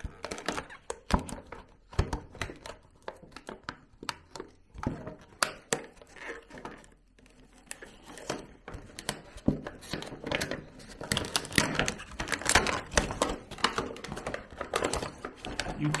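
A cardboard toy box being opened by hand: flaps pulled and torn open and a clear plastic tray slid out and handled, giving a busy run of rustles, crinkles, scrapes and small clicks. It goes quieter for a moment about halfway, then is busiest near the end.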